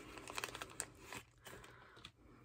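Faint crinkling of a small plastic packet of orthodontic elastics as a rubber band is taken out: a cluster of small crackles in the first second or so, then a few quieter ticks.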